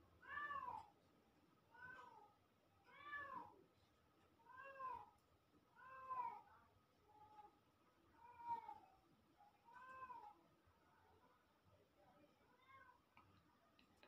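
A cat meowing repeatedly and faintly, about one short rising-and-falling meow every second and a half, the last few fainter.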